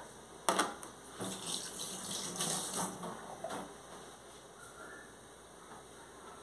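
Kitchen tap water splashing into a stainless-steel sink while a hand is rinsed under it, after a short knock about half a second in; the water sound fades out after about three and a half seconds.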